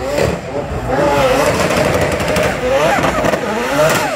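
Mazda 26B four-rotor twin-turbo rotary engine in a drifting MX-5, revving hard, its note rising and falling again and again, over the hiss of spinning tyres. A person laughs at the start.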